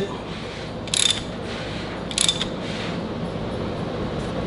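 Ratchet wrench on the crankshaft bolt clicking in two short bursts about a second apart, as the crank is turned to rotate the timing chain and sprockets.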